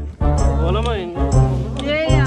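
Background music: a song with a voice singing over a steady, prominent bass line.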